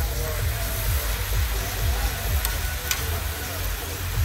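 Shredded cabbage sizzling on a hot flat-top griddle as it is tossed and stirred with a metal fork, with two sharp clicks of the fork on the steel a little past the middle. Background music with a steady low beat plays over it.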